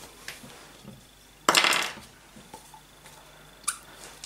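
A plastic PVA glue bottle being opened and handled: faint ticks and knocks, with one loud half-second rasp about a second and a half in and a short sharp scrape near the end, as the cap comes off and the bottle is tipped over a plastic tub.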